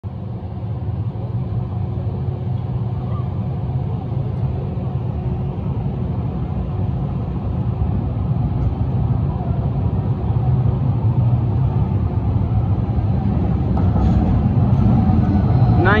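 Steady low rumble of city street noise, swelling over the second half as a Siemens SD160 light-rail train approaches and pulls into the platform.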